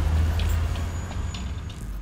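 Deep, steady low rumble from the trailer's sound design, with scattered sharp high ticks over it, fading out steadily.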